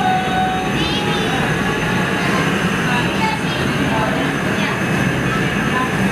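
Steady, even roar of the gas burners in a glassblowing hot shop, with voices talking faintly underneath.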